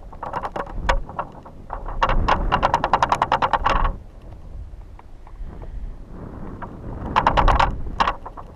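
Wind buffeting a high-altitude balloon payload as it climbs and swings, with a low rumble throughout. Two bursts of rapid fluttering rattle, about ten clicks a second: one about two seconds in lasting some two seconds, and a shorter one near the end.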